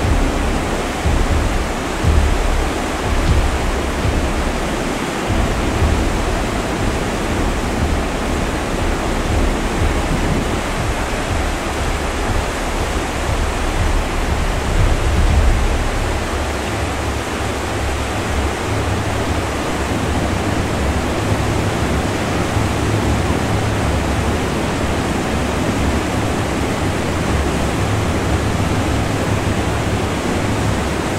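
Whitewater rapids: a steady, loud rush of river water churning over and around boulders, with a low rumble beneath that changes character about halfway through.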